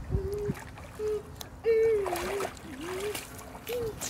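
A voice humming a short, wavering tune in several broken phrases, with water splashing about halfway through.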